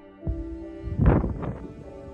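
A hard puff of breath blown out through pursed lips, rumbling on the microphone about a second in, with a shorter puff just before it, over slow instrumental background music.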